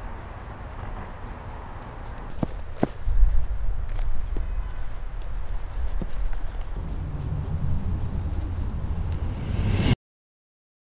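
Footsteps on a sandy trail over a low rumble that grows louder about three seconds in, with a few sharp clicks, then the sound cuts off suddenly.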